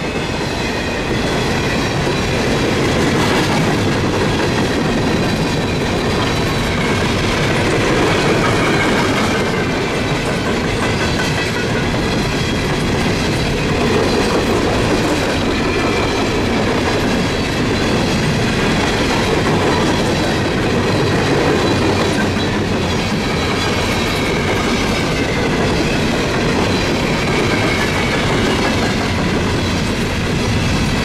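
Empty CSX coal cars rolling past at speed: a steady loud rumble and rattle of steel wheels on the rails, with clickety-clack over the rail joints and faint high ringing tones threading through.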